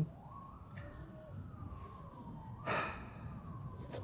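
A man draws a short breath about two and a half seconds in, over a faint siren whose pitch slowly rises and then falls.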